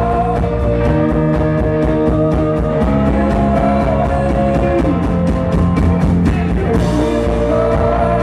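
A rock band playing live: electric guitars, bass, keyboard and drum kit, with long held notes over a steady, quick drum beat.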